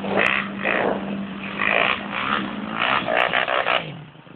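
Off-road vehicle engine revved in repeated short bursts, about six in four seconds, over a steady engine drone, with wheels spinning in mud.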